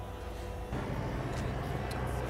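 Faint outdoor background noise: a steady low rumble of distant traffic, growing slightly louder under a second in.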